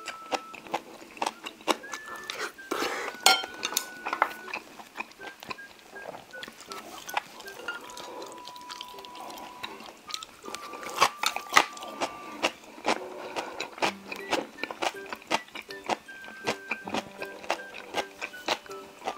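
Close-miked eating of spicy steamed monkfish with bean sprouts: wet chewing and many sharp crunching clicks from the bean sprouts. Light background music with held notes plays underneath.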